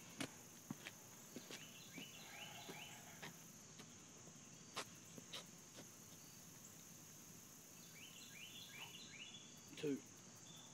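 Steady high-pitched chorus of crickets, faint, with a few short chirping calls about two seconds in and again near the end, and an occasional faint knock.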